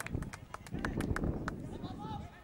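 Players shouting and calling across an open football pitch, with a quick irregular run of sharp clicks in the first second and a half.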